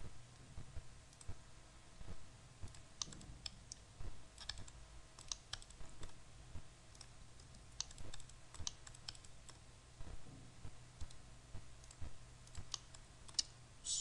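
Faint, irregular computer mouse clicks, a few every second, over a low steady hum.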